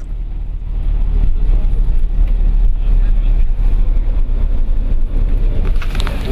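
Steady low rumble of engine and road noise heard from inside a moving vehicle driving on a concrete road.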